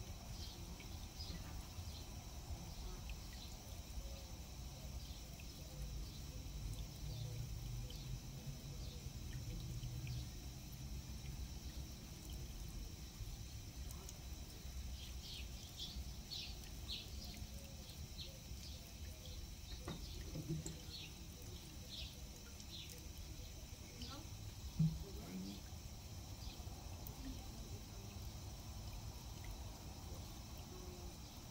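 Garden ambience over a steady low rumble: small birds chirping in short high calls, most often in the middle of the stretch, and a faint trickle of water from a watering can. One sharp knock stands out near the end.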